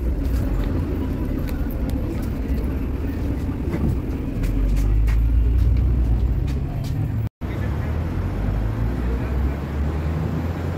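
Low, steady engine and road rumble heard from inside a moving minibus cabin, with a few faint rattles. About seven seconds in the sound cuts out for an instant, and a similar traffic rumble carries on after it.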